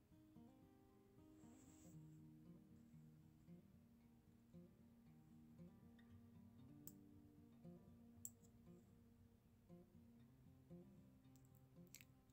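Very faint background music of plucked, guitar-like notes, with a few soft clicks.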